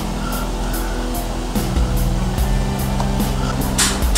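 Background music with a steady beat, with a car engine running low underneath.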